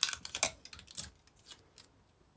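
Sticky tape pulled from a desk tape dispenser and torn off: a quick run of crackly clicks in the first second, then a few light ticks as the tape is handled.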